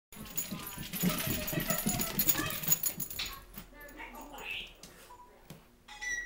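Small dogs barking and yipping excitedly at play, busiest for the first three seconds and then dying down to scattered sounds.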